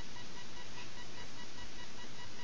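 Steady background hiss carrying a faint, rapidly pulsing high tone, like electrical interference picked up by the microphone.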